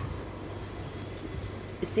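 Hands kneading soft chapati dough in a stainless steel bowl: soft, muffled pressing and squishing with no sharp knocks, over a steady low hum.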